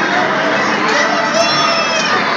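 Loud crowd din in a busy children's arcade: many children shouting and people talking over each other, with a high, drawn-out shout in the second half.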